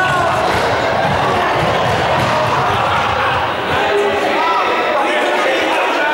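A group of people running on a sports-hall floor, many footfalls thudding, with voices calling out over them. The footfalls thin out about four seconds in as the runners slow down.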